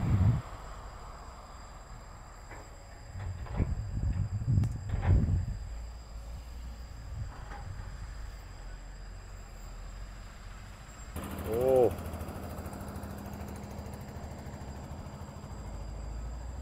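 Caterpillar motor grader's diesel engine running as it works sandy soil, a steady low rumble that swells heavily for a couple of seconds a few seconds in. A brief pitched sound rises and falls about twelve seconds in.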